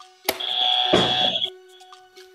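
Quiz buzzer going off when a contestant hits it: a sharp click, then a steady high electronic beep for about a second that cuts off abruptly.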